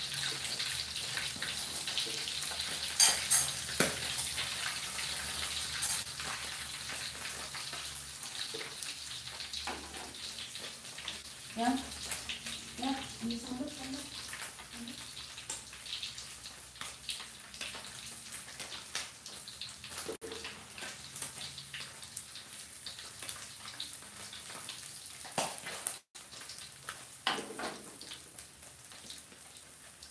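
Catfish pieces frying in hot oil in an aluminium wok: a dense crackling sizzle that gradually quietens. A few sharp metal clatters of the spatula against the wok about three seconds in.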